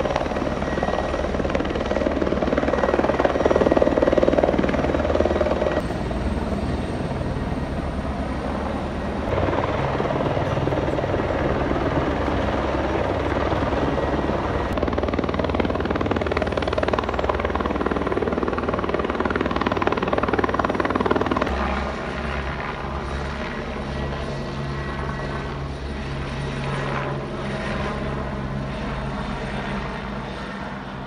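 Helicopter flying low overhead, its rotor beating steadily in a rapid low thudding. It is loudest a few seconds in and drops to a quieter level about two-thirds of the way through as it moves off.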